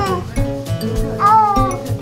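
Background music with a steady beat, over which a toddler gives a short squeal of delight at the start and a longer, high arching squeal just past the middle.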